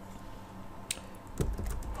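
Computer keyboard being typed on: a single keystroke about a second in, then a quick run of several keys near the end.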